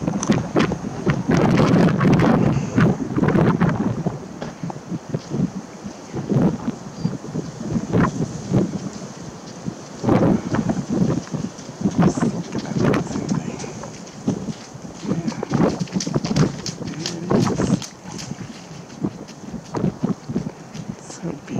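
Wind buffeting the microphone in irregular gusts, a low rumbling that swells and drops every second or two.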